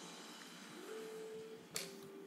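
Faint whine of a toy radio-controlled car's small electric motor, rising in pitch about a second in and holding steady, then a sharp click near the end after which the whine drops slightly.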